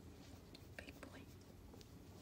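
Near silence, with a few faint, brief soft sounds.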